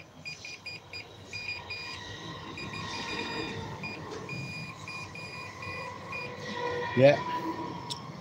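Multimeter continuity beeper giving a high-pitched beep that keeps cutting in and out unevenly as the test probes touch a circular saw's armature at the commutator and shaft. The beeping shows continuity where there should be none: the armature winding is shorted.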